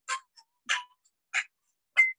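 A recording of traditional Peruvian shamanic icaros playing from a phone: a rattle shaken in a slow, even beat, about three shakes every two seconds, with a whistled tune coming in at the very end.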